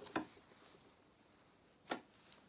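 Cotton fabric being handled and eased together for pinning: a brief rustle just after the start and a sharper one near the end, with quiet between.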